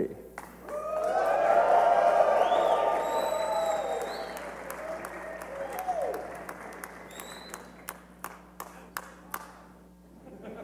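Audience cheering and applauding, with many voices shouting and whooping. It swells about half a second in, peaks over the next couple of seconds, then fades to a few scattered claps near the end.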